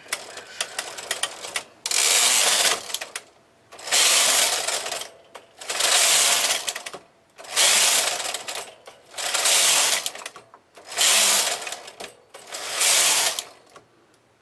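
Lace carriage of a Brother KH970 knitting machine pushed back and forth along the needle bed: six passes of about a second and a half each, with a few clicks before the first.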